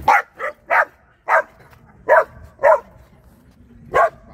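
Puppy barking: about six short, sharp barks in the first three seconds, each one separate, with brief pauses between.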